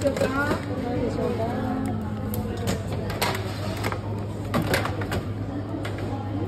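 Voices over a steady low hum, with a few short voiced sounds near the start. Several sharp clicks and knocks come in the middle as plastic tongs pick up a pastry and set it on a plastic tray.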